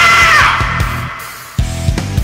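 Rock karaoke performance: a man's long held, shouted sung note over a band backing track ends about half a second in. The music then fades and nearly drops out, and drums and electric guitar come back in near the end.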